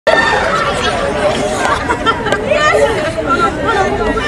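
Group chatter: several young women footballers talking and calling out over one another.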